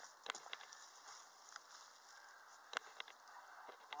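Faint rustling of loose potting soil with a few scattered sharp clicks, as gloved hands dig a sweet potato out of a bucket's soil.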